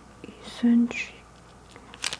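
A person's brief, soft murmured vocal sound about half a second in, followed by a short whispered, breathy sound; otherwise quiet.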